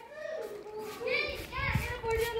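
Children's voices, talking and calling out but without clear words, with a low rumble in the second half.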